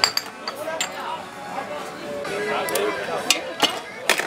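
Stemmed beer glasses clinking as they are handled and set down on a serving tray and bar counter: a handful of sharp clinks spread across a few seconds, over background chatter.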